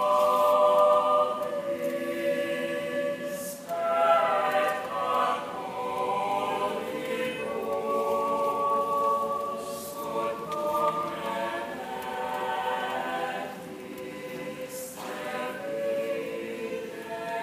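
Mixed choir of women's and men's voices singing slow, held chords that shift every second or so, with a slight drop in loudness near the end.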